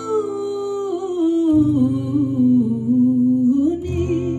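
A woman singing a slow Ladino folk song over acoustic guitar, her voice holding one long line that slides down in pitch and climbs back up near the end.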